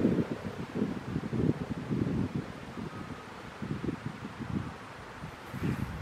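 Wind buffeting the microphone in uneven low gusts, with no siren tone to be heard.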